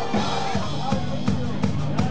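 Live heavy metal band playing: drum kit strikes about two to three times a second under held, distorted electric guitar and bass chords.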